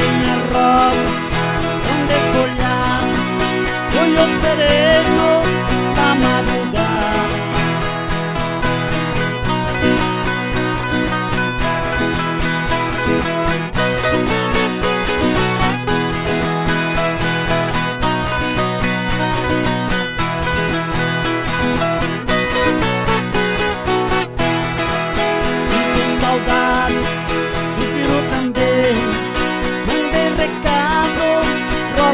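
Two Brazilian violas caipiras, ten-string folk guitars, strummed and picked together in a steady instrumental caipira (sertanejo raiz) passage with no singing.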